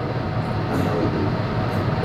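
A steady low rumble of background room noise.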